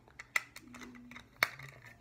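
LEGO bricks handled and pressed together: small plastic clicks and ticks, with two sharper snaps, one about a third of a second in and one past the middle.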